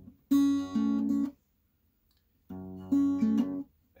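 Acoustic guitar with a capo at the second fret, fingerpicking an E minor chord shape: two short phrases of plucked notes, each about a second long, with a pause between them.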